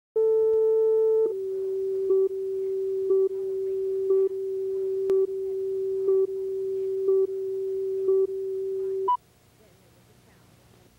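Videotape leader tones: a steady reference tone that steps down slightly in pitch and level about a second in, then runs on with a short countdown beep once a second. It ends in a higher beep about nine seconds in and cuts off suddenly, leaving faint tape hiss.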